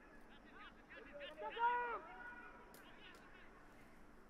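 Faint distant shouts from men's voices across a football ground: a few drawn-out calls that rise and fall in pitch during the first two seconds, over low stadium background noise.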